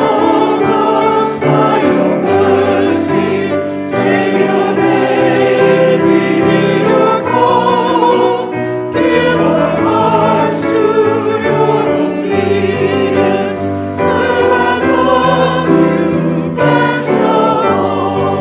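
A church congregation and choir singing a hymn with piano accompaniment, in sustained lines with short breaks between phrases.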